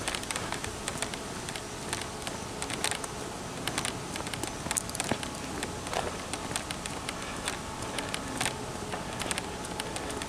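Footsteps on a paved path and handling knocks from a handheld camera, heard as scattered, irregular light clicks over a steady outdoor background hiss.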